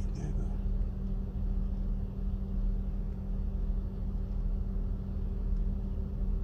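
Steady low hum of a car heard from inside its cabin: a constant drone of even pitch over a low rumble, with a brief murmured voice at the very start.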